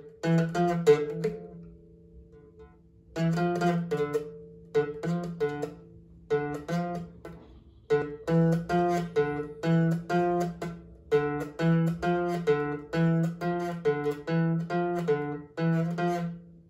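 Small acoustic guitar strummed, a chord about twice a second, with a short break near the start and another about halfway through.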